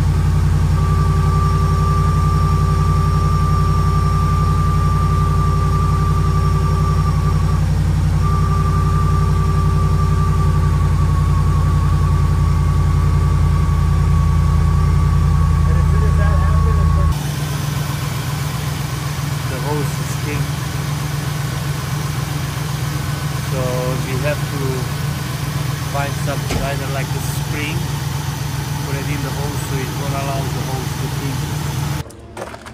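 Ford E-Series van engine idling with the hood up, with a steady high-pitched whine over the deep engine note: the whining noise being listened for. About halfway through, the whine stops and the low rumble drops, and the engine runs on more quietly under voices.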